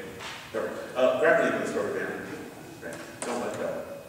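Indistinct speech in a large hall, in short phrases with pauses between.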